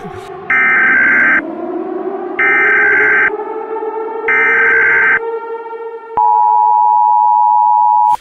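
Emergency Alert System broadcast tones: three harsh, buzzy data bursts about a second apart, then the long, steady two-note attention tone starting about six seconds in, with a low drone rising underneath.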